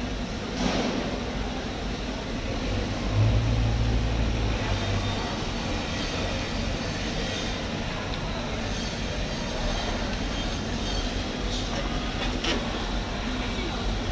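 Steady, busy background noise of a fish-cutting floor, with a low machine hum rising about three seconds in and fading after about two seconds, and a few sharp knocks near the end.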